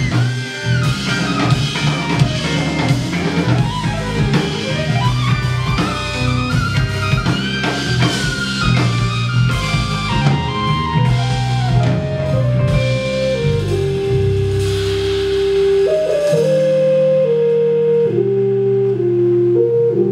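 Live band playing an instrumental passage: electric guitar lines over drum kit and bass, with keyboard. About two-thirds of the way through the drums fall away and long held keyboard tones step downward.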